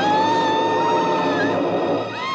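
A woman's long, high scream over background music. It rises at the start, holds one pitch for about a second and a half, and breaks off with a drop near the end.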